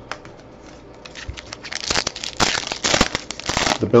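A 2019 Topps Allen & Ginter baseball card pack wrapper crinkling and tearing as it is pulled open by hand. It starts about a second in and grows louder, with many small crackles.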